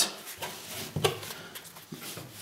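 Light rustling and a few soft clicks of hands wrapping a Kevlar cord around a rifle barrel.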